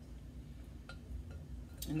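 Quiet kitchen room tone with a couple of faint ticks and drips as a thin stream of tamarind juice runs through a mesh strainer into a glass bowl.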